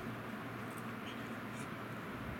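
Faint handling sounds of a metal piano hinge being slid and set in place along a wooden board edge: a few light ticks and scrapes over a steady low room hum.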